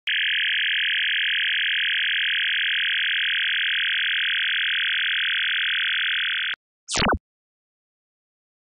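Synthesized electronic sound effect: a steady, buzzy electronic drone that cuts off suddenly about six and a half seconds in. It is followed by one quick zap that falls from high to low.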